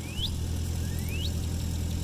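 Engine idling steadily with a low, even hum. Two short rising chirps sound over it, one at the start and one about a second in.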